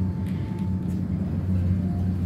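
Steady low hum and rumble of an elevator car in motion, with a faint thin tone above it.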